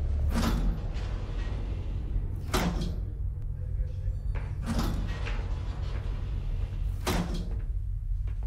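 Spaceship-interior ambience: a steady low hum with a swishing whoosh repeating about every two seconds.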